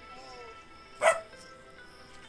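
A single short dog bark about a second in, over steady background music.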